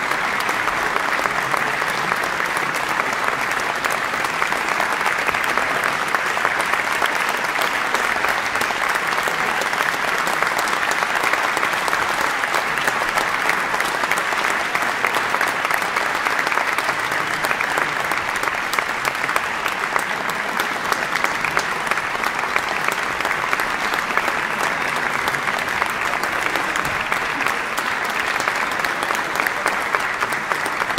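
A large audience applauding steadily, a dense, continuous clapping that keeps an even level throughout, as the orchestra takes its bows.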